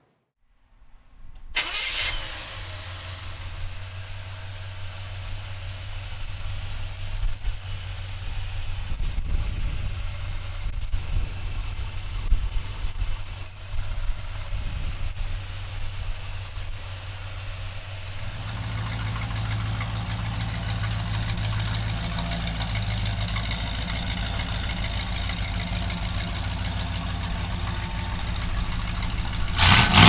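Chevrolet 402 cubic-inch big-block V8 with a four-barrel carburettor and a brand-new exhaust system starting up about two seconds in. It runs unevenly with several sharp jumps in level up to about 18 seconds, then settles into a steadier, louder run. There is a brief loud burst right at the end.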